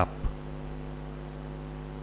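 Steady low electrical mains hum with a faint hiss underneath, the background noise of the recording setup.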